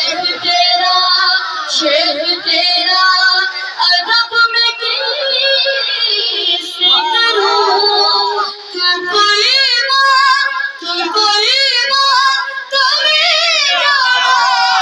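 A boy singing a manqabat (devotional praise song) into a microphone over a PA, unbroken high voice with ornamented, wavering held notes, the strongest about two-thirds of the way in and near the end.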